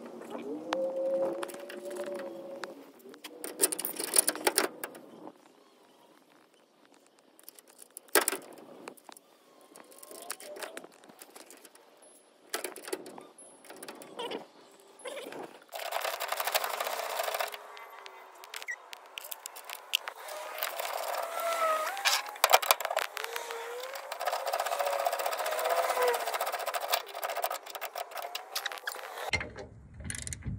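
Metal clicks, knocks and scraping of a wrench tightening the bolts of a hand crank winch onto a steel boat trailer tongue, busier in the second half. A low, wordless voice comes and goes.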